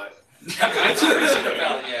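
Several people laughing and chuckling together, starting about half a second in after a brief lull, with a few spoken words mixed in.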